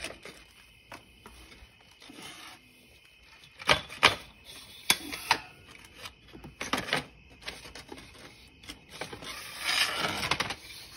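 Scattered clicks and knocks of hard plastic being handled as the moulded plastic seat of a 12-volt ride-on toy UTV is taken off its body. There is a cluster of sharper knocks a few seconds in and a busier clatter near the end.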